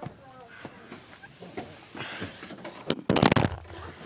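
Faint voices in the background, then about three seconds in a brief, loud rustle of handling noise as the phone's microphone is rubbed or covered.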